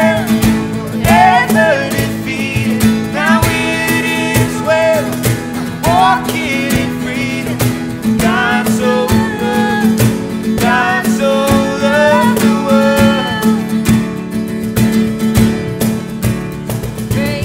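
Live acoustic music: a woman singing over a strummed acoustic guitar, with a cajon played by hand keeping a steady beat.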